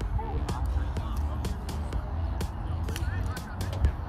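Outdoor ambience between pitches: a steady low rumble of wind on the microphone, faint distant voices, and a few light knocks.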